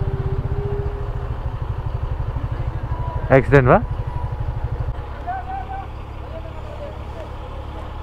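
Motorcycle engine running at low speed under the rider, its exhaust pulsing steadily, then easing off and quieter about five seconds in. A brief voice-like sound comes in the middle.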